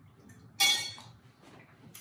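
A single sharp clink of a utensil against glass about half a second in, ringing out briefly, then faint handling noise and a small click near the end.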